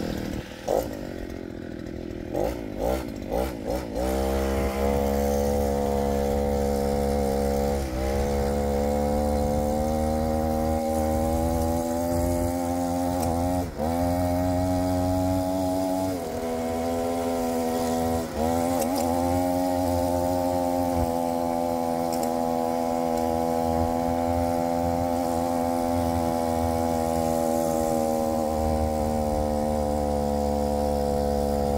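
Small brushcutter engine driving a bicycle's rear tyre by friction. It gives a few short revs at first, then runs steadily at full throttle from about four seconds in, under load as the bike climbs a hill. Its pitch dips briefly a few times.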